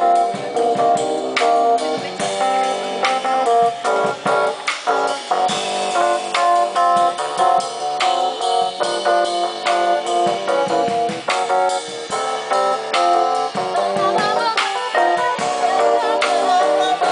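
Live jazz band playing an instrumental passage: keyboard chords and melody over a drum kit, with steady drum strokes throughout.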